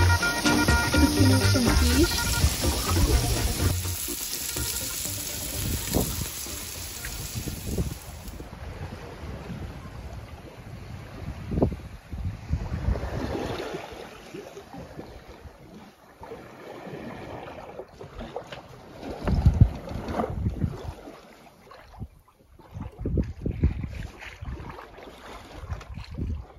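Background music fades out over the first several seconds. Then wind gusts against the microphone over the wash of the sea, aboard a sailboat under way.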